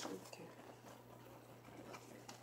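Quiet, faint rustling and light taps of patterned scrapbook paper being handled and shifted on a tabletop, over a low steady hum.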